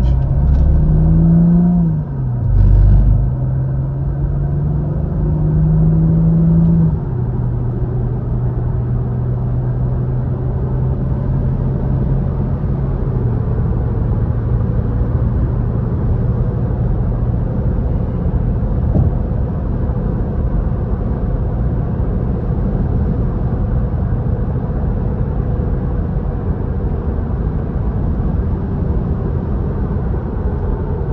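Car engine heard from inside the cabin, accelerating through the gears of an automatic transmission: its pitch rises and drops at an upshift about two seconds in and again about seven seconds in, with a loud low thump near three seconds. It then settles to steady highway cruising with a constant engine drone and tyre and road noise.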